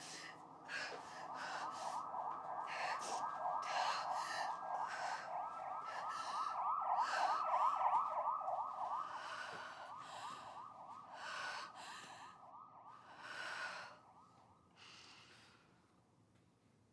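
A woman breathing in sharp, ragged gasps, one or two a second, in distress. Under the breaths a fast-warbling, siren-like wail swells to its loudest around the middle and dies away about two seconds before the end.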